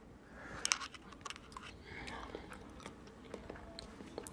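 A person chewing a mouthful of rice and beans close to the microphone, quietly, with scattered faint clicks of the mouth.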